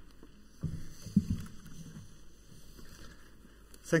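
Handling noise at a lectern microphone: a few soft thumps and one sharp knock about a second in, before speech begins at the very end.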